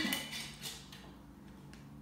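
A drinking glass set down on a kitchen counter with a short clink right at the start, followed by a few fainter knocks and a low steady hum.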